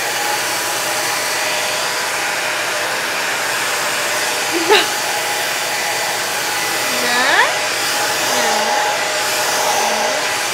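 Revlon 360-surround hair dryer with an AC motor running steadily: a rush of air with a faint steady whine, blowing down onto short hair.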